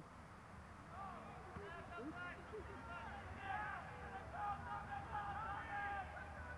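Faint background voices: several people talking and calling at a distance, well below the level of the nearby commentary, with a couple of longer held calls in the second half.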